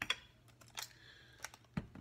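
Light clicks and taps of kitchen items being handled and set down on a countertop, about four in all, with a firmer knock near the end.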